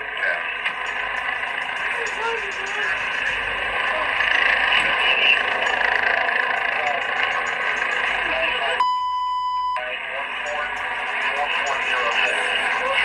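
Body-camera audio of a police arrest: muffled, indistinct voices and police radio chatter over a steady rushing background. About nine seconds in, a single high steady beep lasts about a second while all other sound drops out, like a censor bleep.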